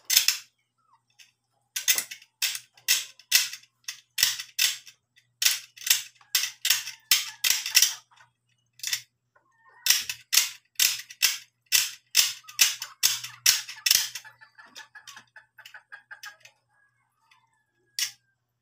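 Quick scraping strokes of a box-cutter blade on a small pool-cue part, about three a second in runs with short pauses. Near the end the strokes give way to fainter, lighter scratching.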